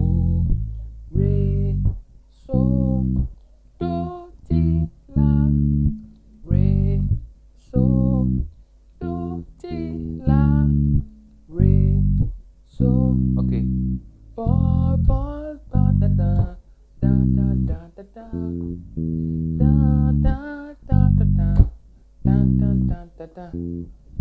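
Electric bass guitar playing a reggae bassline: separate plucked notes in short repeating phrases with brief gaps between them. It is strung with old strings that make the tone sound funny.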